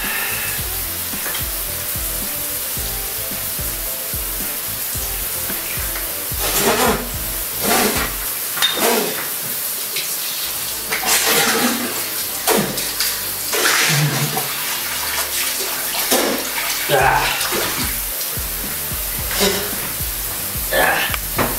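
Water running steadily from a bathroom sink tap, with short irregular splashes from about six seconds in, as water is scooped onto the face, over faint background music.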